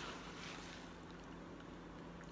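Faint rustle of a paper towel as it is pulled off and raised to the face, a soft sound at the start and another about half a second in, over a low steady room hum.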